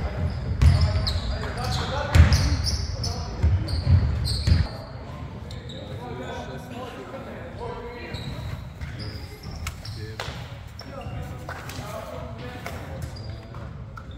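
Basketballs bouncing on a hardwood gym floor during warm-up, with voices echoing in a large sports hall. A loud low rumble runs underneath and stops suddenly about four and a half seconds in.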